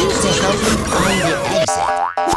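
Cartoon boing sound effects for a comic fight, over background music: one springy tone rising and falling about a second in, and another starting near the end.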